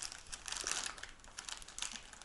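Faint, irregular crinkling of a plastic sweets packet handled in a child's hands.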